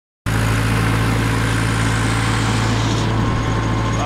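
Fecto tractor's diesel engine running steadily, a constant low drone with no change in speed.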